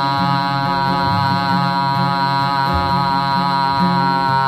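A man's voice holding one long sung note, steady in pitch, over acoustic guitar.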